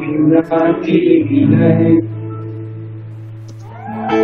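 Worship song: a voice singing with acoustic guitar, the sung line ending about two seconds in and a single held note slowly fading until the next line begins.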